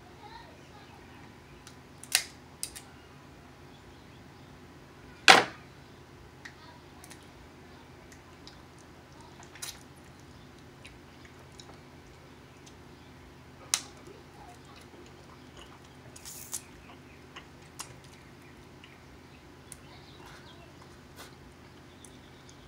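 Cooked crab shells cracking and snapping as they are broken open by hand and mouth for eating, a handful of sharp cracks spread out, the loudest about five seconds in, with softer chewing and sucking between them.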